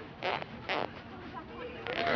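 Distant voices of soccer players and sideline spectators: two short shouts within the first second, then faint talk.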